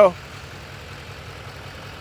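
A vehicle engine idling in the background: a steady low rumble with no change through the pause.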